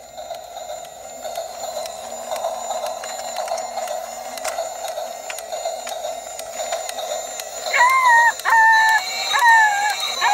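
Battery-powered light-up toy train engine running, giving a steady electronic buzz with faint regular clicks. From about eight seconds in it plays a run of four short, slightly falling electronic tones.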